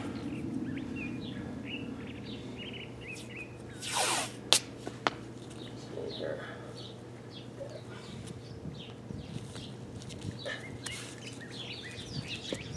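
Small birds chirping in short, repeated calls, over a steady low hum. About four seconds in there is a brief loud rustle of hand handling, then two sharp clicks.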